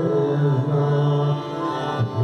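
Indian classical vocal music: a male voice singing long, slowly bending held notes, accompanied by sitar.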